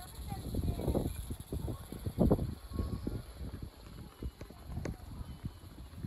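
Gusty wind buffeting the microphone, with cloth flags flapping in irregular low bursts.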